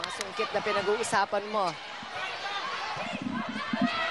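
Indoor volleyball match ambience: voices from the crowd and court, with several sharp knocks of the ball being hit or landing.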